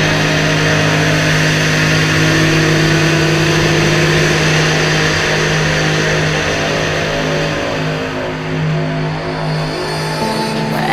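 Husqvarna SMS 125 supermoto engine running at steady revs while riding, heard from the onboard camera, its note holding almost level and easing slightly near the end.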